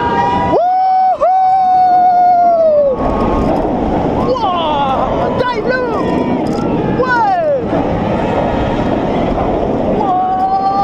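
On-ride audio of a B&M inverted roller coaster: a long held yell as the train goes over the top, then from about three seconds in a loud rush of wind and the train running on its nylon wheels, with several falling screams from riders.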